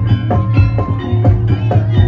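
Javanese barongan gamelan music: drum strokes in a fast, steady beat, about three to four a second, under ringing metal percussion tones.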